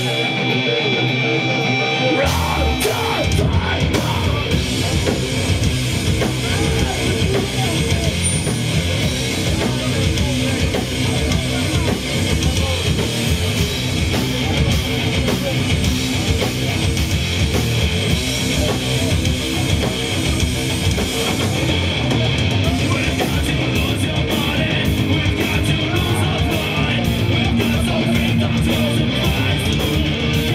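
Metalcore band playing live: distorted electric guitars, bass and drum kit. The low end of the full band comes in about two seconds in, and near the end the drums keep a steady, even beat.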